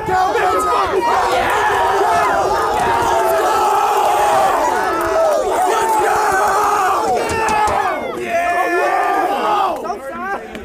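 Crowd of spectators yelling and cheering, many voices shouting over one another, the reaction to a fight being finished. The noise dips briefly about eight seconds in, then picks up again.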